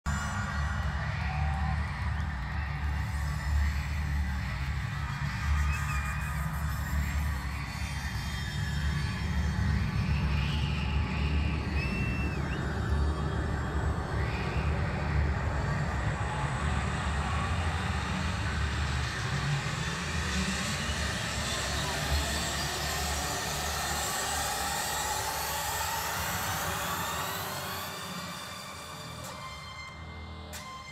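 Crowd noise in a packed rock venue, with shouts and whoops, over a deep, steady bass drone from the PA. Through the second half a rising sweep builds, and the sound drops back near the end.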